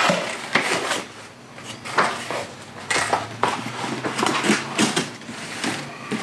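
Packaging being handled and opened by hand: paper and plastic rustling and crinkling in short, irregular scrapes.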